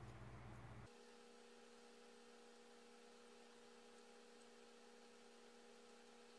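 Near silence: a faint steady hum of a few fixed tones. The background room tone cuts out abruptly about a second in.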